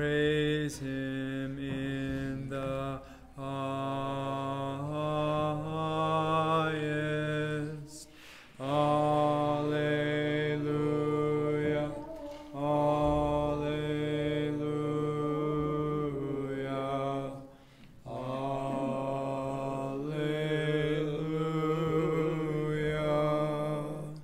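Orthodox liturgical chant sung in long, held phrases with brief breaks between them, more than one pitch sounding together; this is the communion hymn, ending just before the call to communion.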